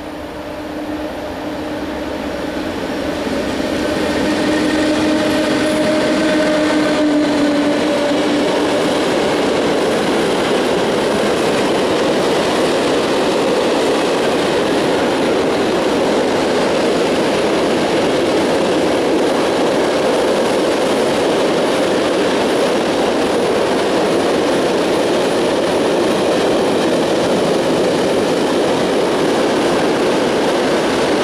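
Freight train with an electric locomotive approaching and then its hopper wagons rolling past close by: a steady rumble and clatter that grows over the first four seconds and then holds. A steady droning tone sounds over the first eight seconds or so, then stops.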